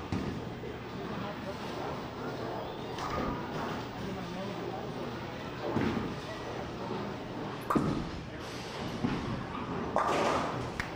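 Bowling-alley background with a sharp thud about three quarters of the way through as the bowling ball lands on the lane, then pins crashing and scattering right at the end as the ball hits them for a spare.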